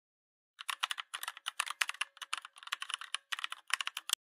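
Typing on a computer keyboard: a quick run of key clicks that begins about half a second in, with a few short pauses.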